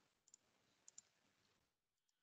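Near silence broken by a few faint computer-mouse clicks, about a third of a second in and again about a second in.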